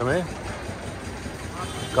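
Street noise with a vehicle engine idling steadily, between a man's short spoken phrases.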